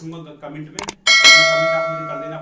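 Sound effect of a subscribe-button animation: a couple of quick mouse clicks, then a bright bell ding halfway through that rings on and fades over about a second and a half. A man's voice goes on underneath.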